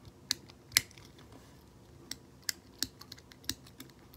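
Toggle light switch on a plastic fidget pad being flicked back and forth: a series of about eight sharp clicks at uneven intervals.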